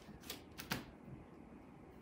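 Two soft taps over quiet room tone as a felt cutout is pressed onto a felt easel board, the second one the louder.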